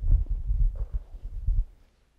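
Low, irregular thumping and rumbling handling noise on a body-worn headset microphone, knocks and rubs for about a second and a half, then dying away.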